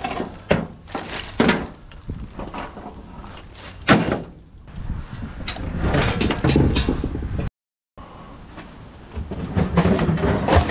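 Scrap metal being handled in a pickup truck bed: a series of sharp clanks and knocks as parts are lifted and set down, thickening into continuous clattering and scraping in the middle. The sound drops out briefly about three-quarters of the way through.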